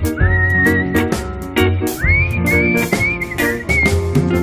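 Live band playing a song with a reggae feel: a whistled melody into the vocal microphone, two phrases that each start with an upward swoop and then hold high, over bass, electric guitar and drums.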